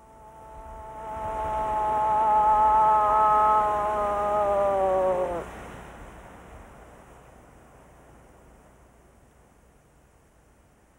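A hunter's imitation cow moose call: one long, nasal moan that swells and holds, then drops in pitch and breaks off about five and a half seconds in, the sound dying away slowly afterwards.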